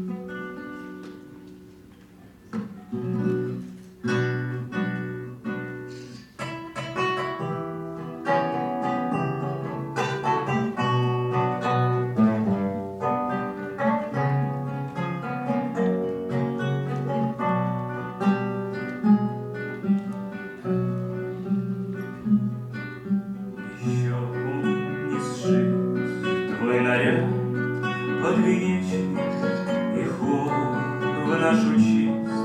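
Two classical guitars playing a plucked instrumental introduction, starting quietly and filling out into a fuller accompaniment about eight seconds in. A man's singing voice comes in over the guitars near the end.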